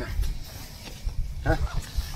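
A brief voiced "heh" about one and a half seconds in, over a steady low rumble of wind on the microphone.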